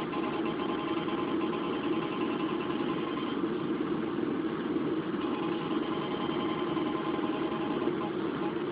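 Handheld EMF meter's sounder giving a steady electronic buzz of several held tones while it is held close to a doll, signalling a strong field reading.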